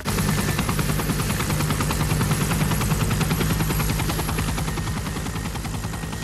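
A loud, steady mechanical sound: rapid, even pulsing over a low, humming drone.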